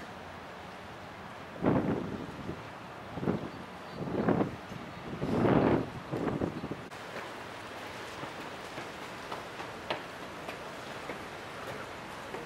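Strong wind gusting on the microphone: several loud rumbling buffets in the first half, then a steadier windy hiss.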